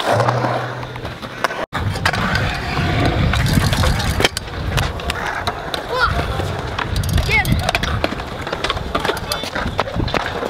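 Stunt scooter wheels rolling over a concrete skatepark, a steady gritty rumble, with a single sharp clack about four seconds in.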